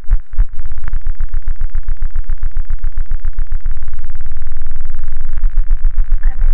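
Harsh electronic noise music: a heavy, distorted low drone chopped into rapid stuttering pulses, about ten a second, with a brief break just after the start.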